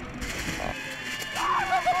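A large paper banner crackling and tearing as football players run through it. Voices rise in a wavering yell about halfway through.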